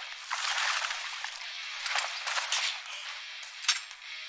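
Thin, filtered audio from the anime episode playing on screen, with everything below the mid-range cut away: a steady hiss with a few faint clicks.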